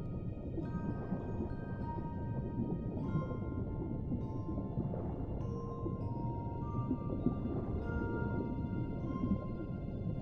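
Music box playing a slow lullaby, its notes ringing out one after another and fading, over a steady low, muffled underwater rumble.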